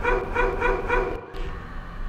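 Dog-bark sound effect cut into a dance music mix: about four quick barks in the first second, then a short drop-out.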